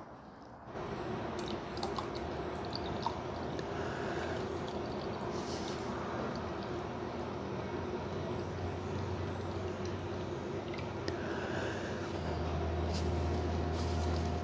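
Thick Bar's Leaks stop-leak liquid pouring steadily from its bottle into a pot of antifreeze, starting about a second in. A low hum grows near the end.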